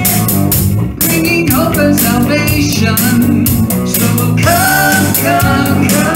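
Live worship band playing: women singing over acoustic guitar, electric bass and drums, with a sung line coming in about a second in and another near the end.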